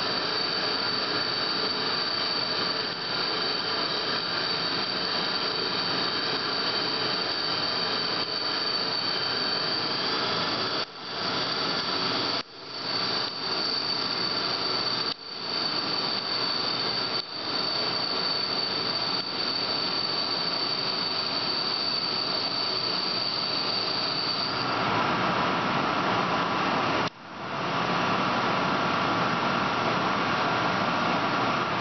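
CNC T100 training lathe turning a metal bar at 0.5 mm depth of cut: steady machining noise with a high, steady squeal from the cut riding over it. The squeal stops near the end, leaving the lathe running, and a few brief dropouts break the sound midway.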